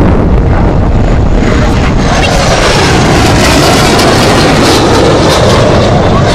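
L-39 Albatros single-engine jet trainer making a fast low pass at about 350 knots: a loud, steady jet roar with a faint high whine that falls in pitch in the first couple of seconds as it goes by.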